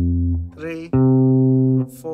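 Solid-body electric guitar playing held chords from a vi–iii–IV–V progression in A flat major. One chord rings and dies away about half a second in. A new chord is struck about a second in and stopped short near the end.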